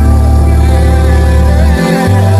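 Background music with a deep, held bass note and steady chords; the bass note changes pitch near the end.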